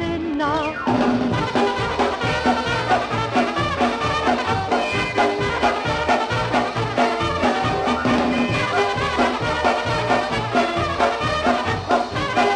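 Polish polka band playing an instrumental passage over a steady two-beat bass. The singer's last held note ends about a second in.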